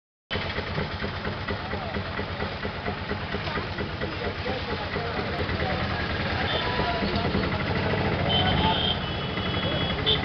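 Engine of a crowded passenger vehicle running steadily, heard from inside among the riders, with many voices talking over it.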